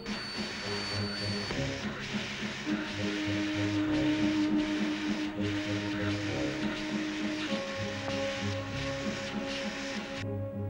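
Orchestral film score with long held notes over a steady, loud hissing rush, a sound effect for the submarine's heated hull throwing off steam as it drives through the ice. The hiss cuts off abruptly at the very end.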